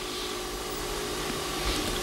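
Steady hiss with a faint, even hum, and no sudden sounds.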